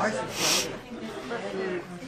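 Background chatter of several people talking, with a short sharp hiss about half a second in.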